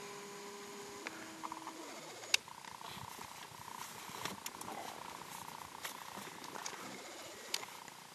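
Small camcorder lens motor whirring as the lens zooms in: a short steady whir that drops in pitch about a second in and stops near two seconds. A fainter steady whine follows, with a few small handling clicks.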